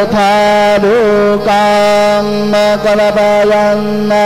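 Indian devotional music: one melodic line of long, held notes with small ornamental bends, over a steady drone.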